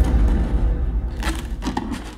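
Taped cardboard box being cut and pulled open with a blade, crackling and tearing in short bursts, over a deep low rumble.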